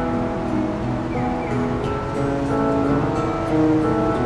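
Small acoustic band playing live: two acoustic guitars accompanying a melody of long held notes.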